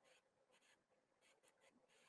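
Near silence, with a few very faint brief rustles like paper being handled.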